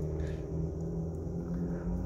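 Steady low hum of a car engine idling, heard from inside the cabin.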